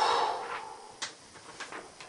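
Sheets of paper being handled: a short burst of rustling as a hand-written card is swapped, then a single sharp click about a second in and a few faint taps.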